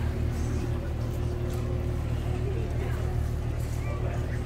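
A moored tour boat's engine running steadily at idle, a constant low rumble, with faint voices of people talking over it.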